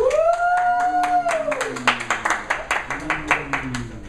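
An audience member's rising cry, held about a second, greets the revealed card, with a lower voice under it; then a small audience claps for the rest of the time.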